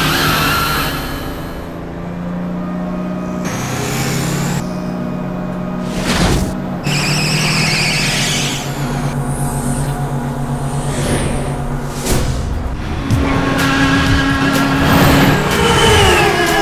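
Film soundtrack of a police van and jeeps driving on a road, under a background score of long held tones. A brief high screech comes about seven seconds in.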